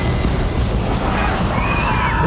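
Dramatic trailer music mixed with a dense layer of action sound effects, with a high wavering cry in the second half.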